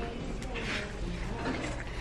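Low, steady background noise of a retail store, with no distinct event standing out.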